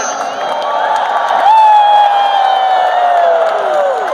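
A man's long, high 'wooo' into a handheld microphone, starting about one and a half seconds in and held for over two seconds while it slowly falls in pitch, over a cheering crowd.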